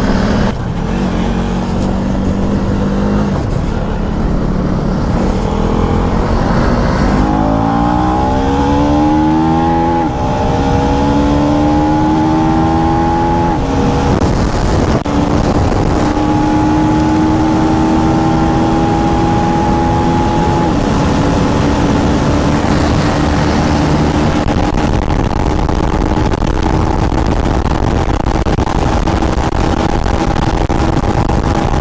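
KTM Duke 390's single-cylinder engine accelerating hard through the gears: the pitch climbs and drops back at each upshift, three times, then holds high at cruising speed. Heavy wind rush over the microphone runs underneath.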